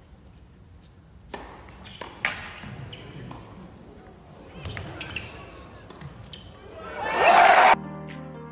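Tennis rally in an indoor arena: sharp racket strikes on the ball with some voices between them, then crowd cheering and applause swelling near the end, which cuts off abruptly.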